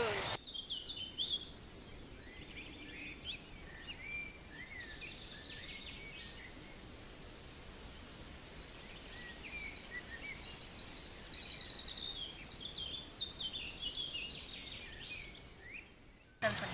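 Small birds chirping and singing, a scatter of short rising and falling calls with a rapid trill about two-thirds of the way through, over a faint steady outdoor hiss.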